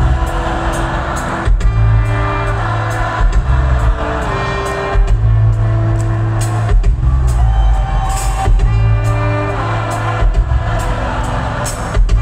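Live rock band playing an instrumental passage, loud through the crowd's recording: trombone and trumpet holding notes over a heavy bass line and a steady drum beat.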